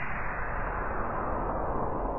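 The decaying tail of a cinematic boom-and-whoosh sound effect: a low, noisy rumble that grows duller as its high end falls away, then begins to fade near the end.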